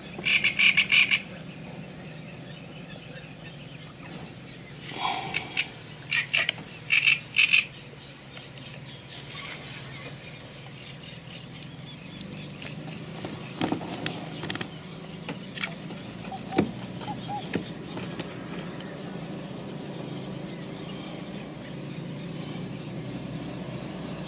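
Frogs croaking from the reeds in short rattling bursts, once at the start and several more from about five to eight seconds in, over a steady low background hum. A few faint clicks come in the middle.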